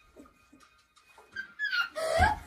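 A short, high-pitched squeal about one and a half seconds in, gliding down in pitch and breaking straight into laughter right at the end; before it only faint room sounds.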